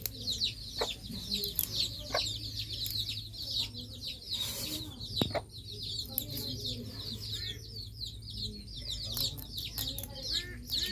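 Many birds chirping steadily in quick, overlapping high calls, with a few light clicks among them.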